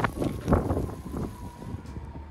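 Wind buffeting the microphone in gusts, with surges at the start and about half a second in.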